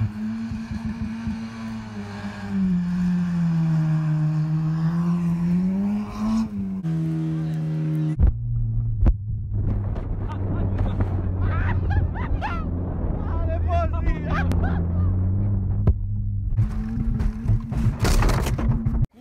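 Car engine revving hard, rising and falling in pitch as the car is driven fast over a rough forest track. It is then heard from inside the cabin, with a few sharp knocks as the car bumps over the ground. Near the end comes a loud crash as the car hits a wooden tower.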